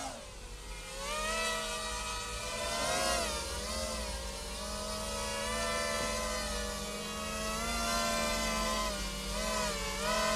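Mini racing quadcopter's four small brushless motors (RCX 1804, 2400KV) with 5-inch three-blade props whining, the pitch gliding up and down again and again as the throttle changes, lifting the quad off the deck into a low hover.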